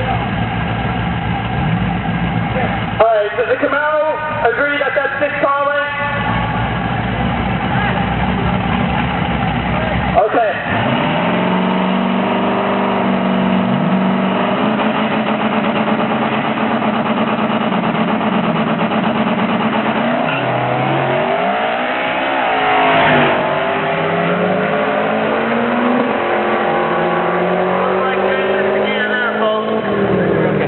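Drag-racing cars, one of them a twin-turbocharged LS1 V8, idling and revving at the starting line. About two-thirds of the way in they launch, and the engine notes climb with each gear change as the cars pull away down the strip. Voices are heard briefly near the start.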